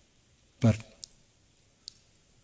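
A man's voice says a single short word in a pause, followed by two faint, sharp clicks, one about a second in and one near the end.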